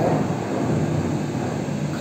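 Steady rushing noise of a pot of water at the boil on a stove burner, the water bath that melts a vessel of paraffin wax.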